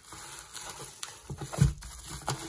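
Bubble wrap crinkling and a cardboard box rustling as a hand works a wrapped item out of it, with irregular small clicks and a thump about one and a half seconds in.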